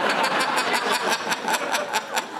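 Studio audience laughing, with a run of hand claps through it; the laughter swells up suddenly just before and holds steady.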